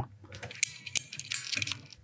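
Screwdriver turning an outer pivot screw of a Stratocaster tremolo bridge, backing it off slightly: faint, irregular scraping and small clicks of the tip working in the screw head.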